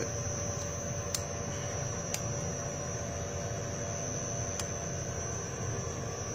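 Steady electrical hum of a running electric motor–generator rig fed through an inverter, under load, with a thin high steady whine and a few faint ticks.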